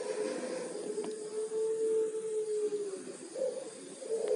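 Zebra dove (perkutut) cooing: a long, slightly wavering coo that sinks a little in pitch and ends about three seconds in, followed by a short higher note.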